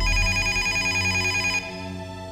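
Telephone ringing with a rapid trill, one ring lasting about a second and a half, over soft background music.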